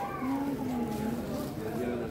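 A cat's long, low yowl, held for over a second and wavering slightly in pitch.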